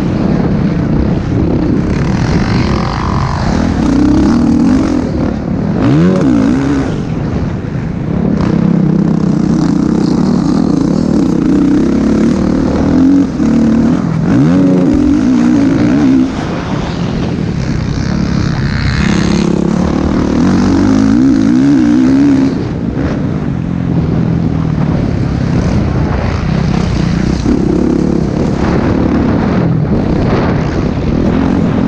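Motocross dirt bike engine heard up close from a camera on the bike, revving hard and easing off over and over as it is raced around the track. There are quick rises in pitch as it accelerates, and the throttle shuts off briefly a few times.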